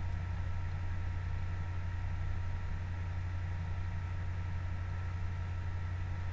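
A steady low hum under a faint even hiss, with nothing else happening: room tone.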